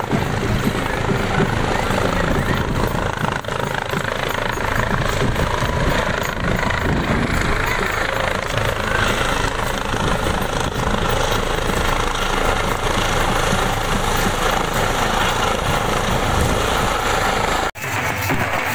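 Helicopter in flight overhead: steady, pulsing rotor chop with engine noise, breaking off for a moment near the end.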